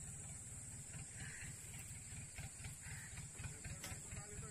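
Faint outdoor background: an uneven low rumble with a steady high-pitched hiss, and a single sharp click near the end.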